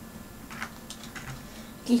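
A few light clicks of plastic LEGO pieces being handled over a LEGO baseplate.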